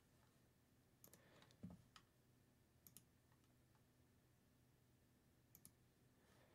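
Near silence with a few faint computer mouse clicks, scattered and some in quick pairs.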